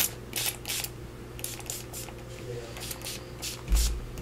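Small Lindy's mica spray bottle pumped in a series of short spritzes, each a brief hiss, misting ink onto a paper envelope. A low thump near the end.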